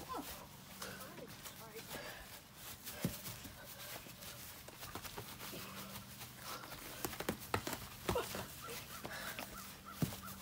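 Scattered soft thuds of boxing gloves striking during a sparring exchange, with a few louder knocks close together about seven to eight seconds in.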